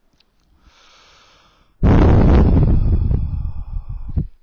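A faint breath in, then a loud, heavy exhale close to the microphone, the air hitting it, starting suddenly about two seconds in and lasting about two and a half seconds.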